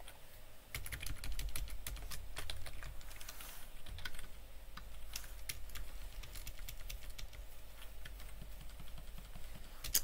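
Typing on a computer keyboard: a run of quick, irregular keystrokes beginning about a second in.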